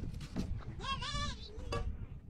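A single short, quavering bleat from a goat or sheep near the middle, over a steady low rumble, with a couple of light knocks.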